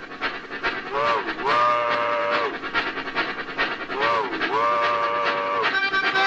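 Harmonicas imitating a steam train whistle: two identical wailing chord calls about three seconds apart, each dipping and rising, then held for about a second. Beneath them runs a steady rhythmic backing.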